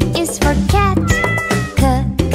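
A house cat meowing several times over upbeat children's song music.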